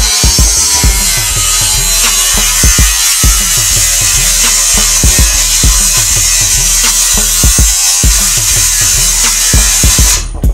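Handheld angle grinder running against the steel stair railing, a loud steady hiss that cuts off abruptly at the end, with background music and a drum beat underneath.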